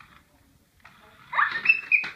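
A young child's loud, high-pitched squeal of excitement that sweeps sharply up in pitch about a second and a half in and lasts about half a second.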